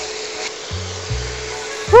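Beef and garlic sizzling in a wok as they are stirred with a spatula, with a steady hiss under background music that has a repeating bass line. A short, loud 'woo!' from a woman comes right at the end.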